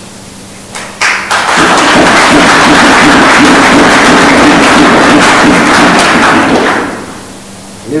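Audience applauding in a hall: a few first claps just before a second in swell into dense, loud applause that fades away near the end.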